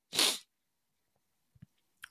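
A short, sharp breath into a close microphone, lasting about a quarter of a second, then near silence with a faint click near the end.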